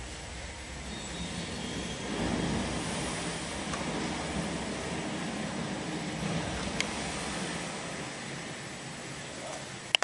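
Samsung BD-D6700 Blu-ray player's slot-loading disc drive ejecting a disc: a steady mechanical whir, louder from about two seconds in, with a couple of light clicks as the disc comes out of the slot.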